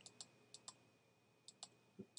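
Near silence with about three pairs of faint, short computer mouse clicks and a faint steady high tone.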